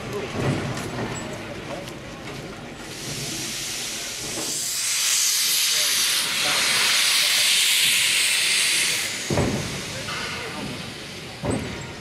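Victorian Railways R class steam locomotive venting steam: a loud hiss that builds about three seconds in and dies away around nine seconds. A couple of short thumps follow near the end.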